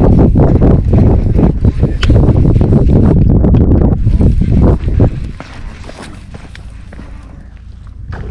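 Wind buffeting the camera's microphone: a loud, rumbling noise that eases off about five seconds in.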